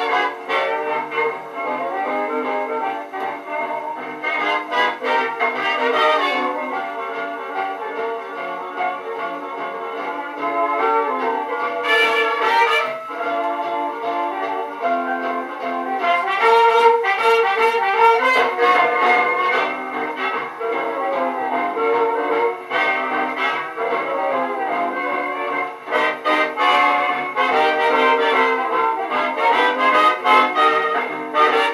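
A 1939 78 rpm record of a dance orchestra playing an instrumental passage led by trumpets and trombones. The recording sounds thin, with no deep bass.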